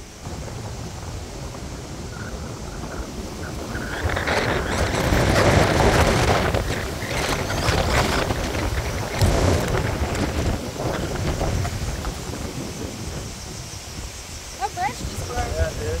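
Strong wind gusting across the microphone over choppy river water: a low, rushing noise that grows louder about four seconds in, peaks around six seconds, and gradually eases toward the end.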